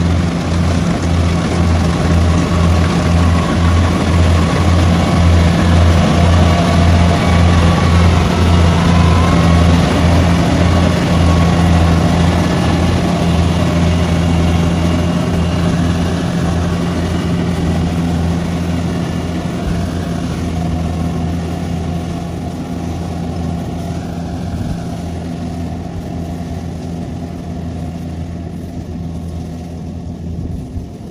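Kubota crawler combine harvester running while cutting rice: a steady engine drone with a low, pulsing hum, growing gradually fainter as the machine moves away.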